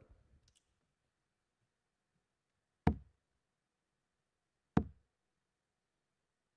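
Two steel-tip darts striking a Winmau bristle dartboard, one about three seconds in and the next about two seconds later, each a short, sharp thud.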